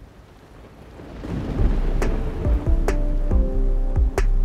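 Thunderstorm sound effect for a weather-segment intro: rain and deep rumbling swell up over the first second or so, with sharp thunder cracks about two and three seconds in. A few held music notes come in under it.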